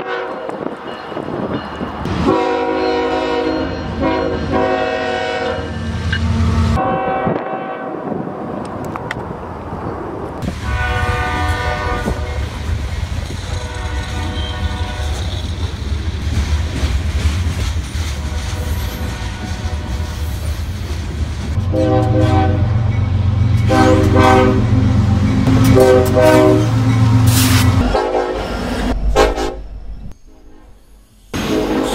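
Diesel locomotive multi-chime air horns sounding in several sequences of blasts, from different trains cut one after another. The first is a third-generation Nathan K5HL five-chime horn. Between and under the blasts, locomotive engines and a passing freight train's wheels rumble.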